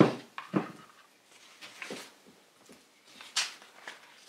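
A glass bottle set down on a desk with a sharp knock, followed by a second, softer knock about half a second later. Then paper rustling, with a page of a spiral notebook flipped over near the end.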